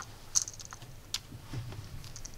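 A few light, sharp clicks from hands handling thin wires and tools at a soldering bench, the clearest about a third of a second in and another just after a second.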